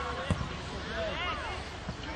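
A football kicked, a single dull thump about a third of a second in, with a fainter knock near the end, amid high-pitched shouting voices.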